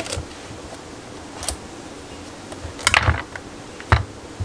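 Chef's knife cutting through a whole pumpkin on a wooden cutting board: scattered knocks of the blade and rind against the board, the loudest cluster about three seconds in as the pumpkin comes apart, and a sharp knock near the end.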